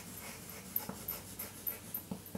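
Chalk writing on a blackboard: a few faint, short scratches and taps as a word is written.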